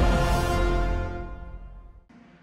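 Broadcast intro theme music: a loud held chord with heavy bass that fades away over the second half.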